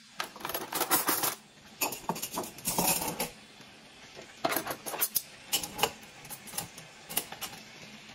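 Metal cutlery clinking and clattering, handled in a plastic drawer tray and dropped into a ceramic mug: a busy run of clinks over the first three seconds, then a pause and a few more separate clinks.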